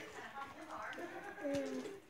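Soft, quiet human voices, ending in a short low hum-like vocal sound a second and a half in.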